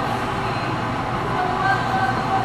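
Live string-band music with a held singing voice, echoing through a large gymnasium.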